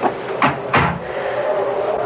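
Sound effect of a door shutting, two knocks about a third of a second apart, followed by a steady whistling wind howl that swells in the second half.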